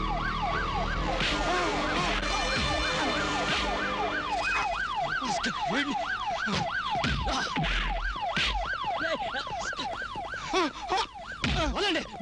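Police siren going in fast rising-and-falling sweeps, about three a second, over film background music, with a few sharp hits near the end.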